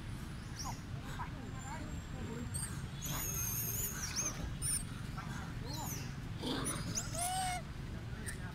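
Long-tailed macaques calling with short high-pitched squeaks and sweeping squeals, loudest about three seconds in and again near the end, over a steady low rumble.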